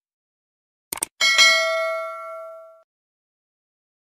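A mouse-click sound effect, a quick double click about a second in. It is followed at once by a bright bell ding that rings for about a second and a half and fades away.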